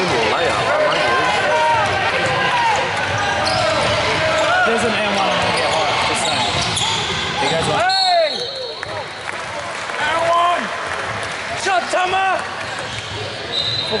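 Basketball game on a gym's hardwood court: sneakers squeaking on the floor, the ball bouncing and voices echoing in the hall, louder in the first half. A short high referee's whistle sounds near the end.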